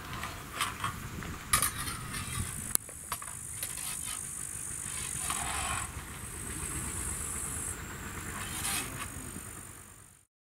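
Outdoor sword-and-buckler sparring: a few sharp clicks and knocks of steel blades and bucklers meeting, with shuffling footsteps on grass. Insects chirr steadily high in the background, and the sound fades out at the very end.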